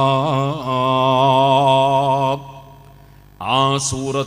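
A man chanting in a melodic recitation style, holding one long steady note for about two seconds, then a short pause before the chant resumes near the end.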